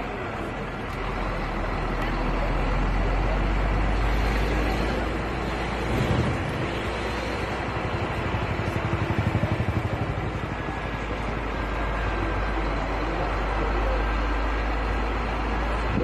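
Steady engine rumble and road noise of a moving vehicle heard from on board, with wind buffeting the microphone and a fast flutter around the middle.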